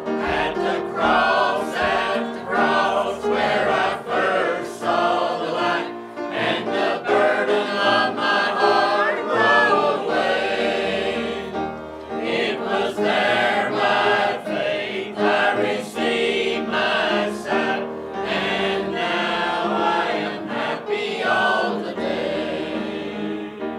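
Mixed choir of men's and women's voices singing a hymn, phrase after phrase, with brief breaks between phrases about six and twelve seconds in.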